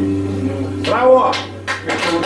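Guitar's final notes ringing on and dying away, with a listener's voice calling out about halfway through as the piece ends.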